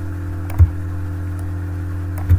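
Steady low electrical hum, with one short thump about half a second in and a few faint clicks.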